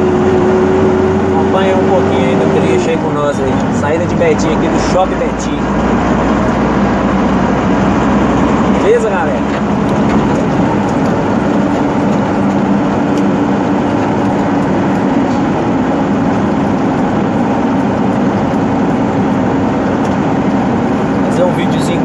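Truck engine and road noise heard inside the cab while driving. The engine note holds steady, then drops about three seconds in, and the running noise continues evenly after that.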